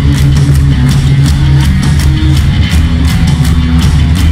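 Punk rock band playing live: electric guitars, bass guitar and a drum kit, loud, with steady cymbal strokes about four a second.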